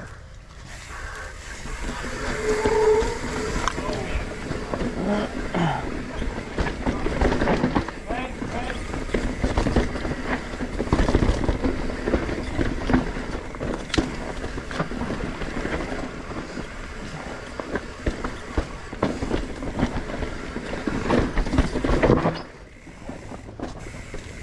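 Mountain bike descending rough dirt singletrack: tyres rolling over dirt and roots with constant rattling and knocking from the bike. The noise drops away sharply near the end.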